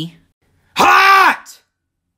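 A man's voice yelling a drawn-out "Hot!" as a strained, wailing cry that rises and falls in pitch, starting a little under a second in and lasting just over half a second.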